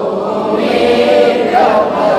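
A man chanting a Sanskrit verse in a slow, melodic sung recitation, holding and bending long notes.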